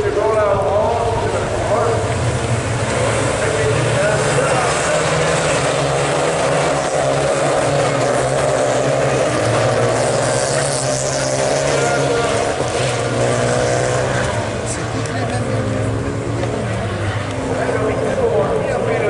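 Renault Clio rallycross cars racing round the circuit, several engines heard at once, their pitch rising and falling with gear changes and passes.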